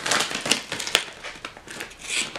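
Dry crackling and crinkling with a few sharp clicks, strongest about half a second and a second in: a dried alfalfa treat stick being handled and offered to a rabbit.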